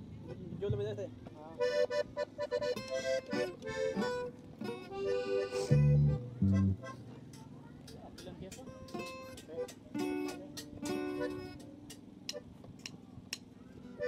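Accordion playing short, scattered phrases with pauses, along with some guitar notes and a couple of deep bass notes about six seconds in: the band warming up between songs rather than playing a song.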